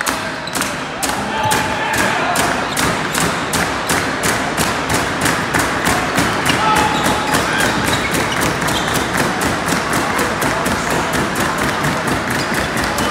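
Steady, evenly spaced thumping at about four beats a second, with occasional shouts over it.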